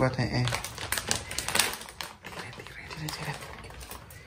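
Rapid crinkling and ticking from hands working with something at a kitchen counter, a dense run of small crackles.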